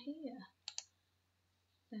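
Two quick computer mouse clicks, close together, a little under a second in, between spoken words.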